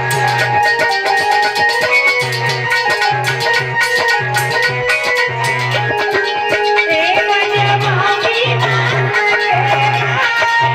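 Live Indian folk devotional music: a harmonium holding steady notes over a fast, regular percussion beat, with a low note pulsing on and off.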